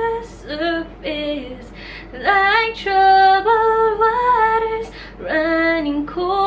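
A woman singing solo and unaccompanied, in short phrases of held, pitched notes with brief breaks between them.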